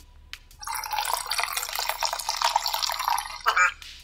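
Soda poured from a can into a plastic measuring pitcher: a steady splashing pour that starts about half a second in and stops shortly before the end.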